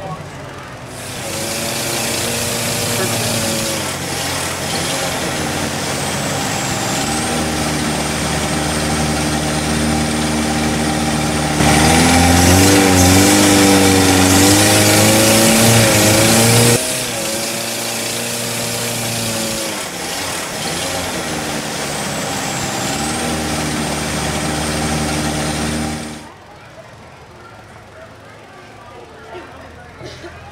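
Longtail boat engine running, its pitch rising and falling. About 12 seconds in it gets much louder, with a rush of water, for about five seconds, then drops back. The sound cuts off sharply about 26 seconds in.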